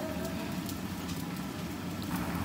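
Sauce simmering and sizzling in a frying pan around fish-paste-stuffed bell peppers: a steady bubbling hiss with fine crackles.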